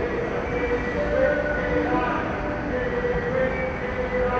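Elevated train passing on the viaduct overhead, a steady low rumble with drawn-out running tones, mixed with voices nearby.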